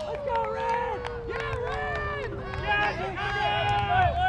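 Several people shouting and cheering over one another, with one long held yell slowly falling in pitch.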